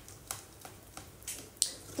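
Wire whisk clicking against the sides of a stainless steel saucepan as it stirs beaten egg yolks into a thick almond-and-sugar mixture: faint ticks about three times a second, one a little louder near the end.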